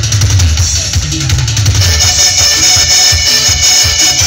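Loud live dance music from a keyboard band: a steady drum beat under a deep bass line, with high held keyboard notes coming in about halfway.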